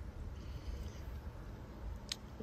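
Faint, steady wind rumbling on the microphone, with no distinct event standing out.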